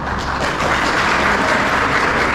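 Audience applauding: a dense, steady patter of many hands clapping that thickens about half a second in.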